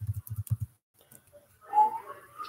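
Laptop keys being typed on, a quick run of about six taps, each a dull thud with a sharp click. Near the end comes a short rising tone, the loudest sound.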